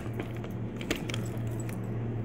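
Handling of a child's soft fabric trolley suitcase: a handful of light clicks and knocks as it is picked up and turned over, the sharpest at the start and just before one second.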